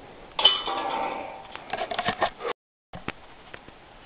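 A disc striking a metal disc golf basket: a sudden metallic clang that rings for about a second, followed by a few quick lighter metallic rattles. The sound cuts off abruptly about two and a half seconds in.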